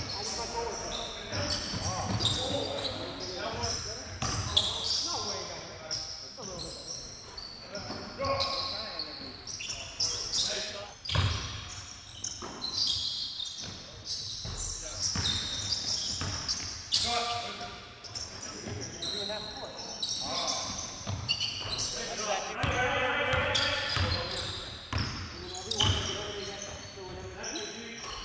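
Basketball bouncing on a wooden gym floor in live game play, with many sharp knocks and players' indistinct voices calling out in a large gym.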